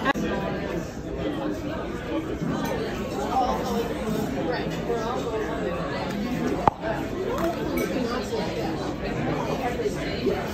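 Indistinct chatter of restaurant diners filling the room, with no clear words. A single sharp click or clink sounds about two-thirds of the way through.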